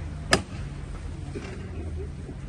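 A single sharp knock about a third of a second in as the processional float is lifted to hand height in one movement on the call, over a low murmur of the crowd.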